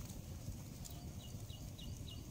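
Small wood fire crackling under a wire grill, a low steady rumble with a few faint sharp pops. A faint high chirp repeats about six times a second from about a second in.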